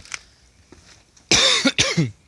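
A man coughs twice in quick succession, the first about a second and a half in and louder, the second short just before the end.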